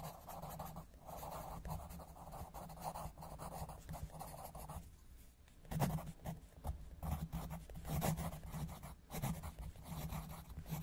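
Coloured pencil scratching on paper in quick, uneven back-and-forth colouring strokes, with a short lull about five seconds in.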